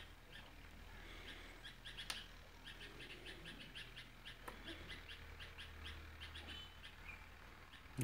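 Faint bird chirping in the background: a run of short, high chirps, several a second. There is a sharp click about two seconds in and a low steady hum underneath.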